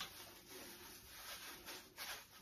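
Faint rustling and light handling noises from cling film and raw chicken pieces being put into a slow cooker pot, with a few soft rustles and taps.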